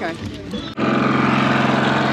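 A motor running steadily with an even low drone, which starts abruptly about three-quarters of a second in and stays level.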